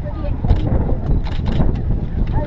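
Wind buffeting the camera microphone in a low rumble, with a voice speaking over it.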